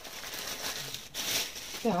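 Plastic packaging bag crinkling and rustling as a knit turtleneck is handled and pulled out of it.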